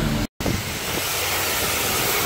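High-pressure wash wand spraying rinse water onto a car, a steady hiss. It breaks off in a moment of dead silence about a third of a second in, then resumes.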